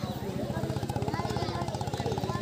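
An engine running steadily, with a rapid, even low pulse, under faint voices.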